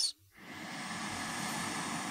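A woman taking one slow, deep breath in through her nose: a steady, soft hiss that starts about a third of a second in and keeps going.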